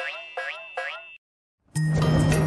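Cartoon spring 'boing' sound effects: three springy bounces, each pitch dipping and rising, about 0.4 s apart, over a fading held chord. After a short silence, music with a strong bass line starts near the end.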